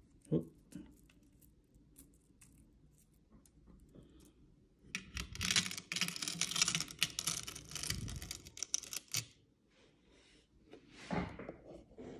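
A heavy 14k gold Cuban link chain clinking and rattling as it is lowered and piles onto the steel tray of a small digital pocket scale. The sound is a dense run of small metallic clicks lasting about four seconds, starting about five seconds in, with a few single clicks before it.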